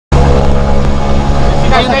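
Cessna skydiving plane's propeller engine running steadily, heard from inside the cabin as a loud, even, low drone.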